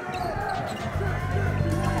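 Basketball game sound on a hardwood court: the ball bouncing amid arena crowd noise, with a steady low musical note coming in about a second in.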